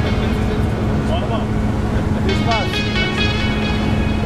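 Background music with a sung melody and a steady low drone.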